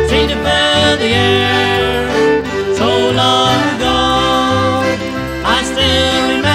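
Studio recording of a folk band playing an instrumental passage of a song, a fiddle lead over acoustic string accompaniment.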